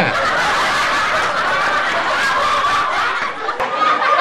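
Several people chuckling and laughing together in a continuous, noisy mass.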